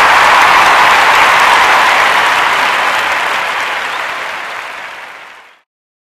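Audience applause that fades away gradually and stops shortly before the end.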